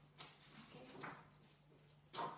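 Faint rasp of masking tape being pulled, shortly after the start, followed by a low steady hum.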